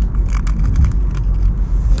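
Inside a moving car's cabin: a steady low rumble of engine and tyre road noise, with a few light clicks and rattles.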